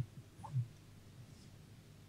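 A brief faint throat-clear near the start, then quiet room tone.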